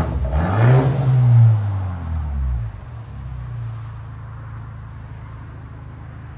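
2024 BMW X1 M35i's turbocharged 2.0-litre four-cylinder, its exhaust resonator cut out, revved once: the pitch climbs for about a second and a half, falls back, and the engine settles to a steady idle for the last few seconds.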